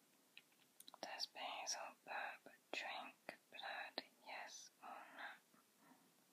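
A person whispering softly, a run of short whispered syllables with a few sharp clicks between them.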